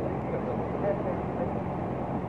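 Steady background din of an outdoor gathering heard through a microphone, with faint voices, during a pause between a speaker's sentences.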